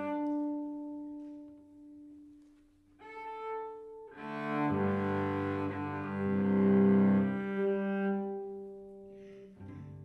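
Solo cello, bowed: sustained notes, sometimes two or more at once, in a slow phrase that fades almost away about two seconds in. A lone note follows, then the playing swells into a fuller, louder passage of several notes at once around the middle before dying away, and a new phrase begins near the end.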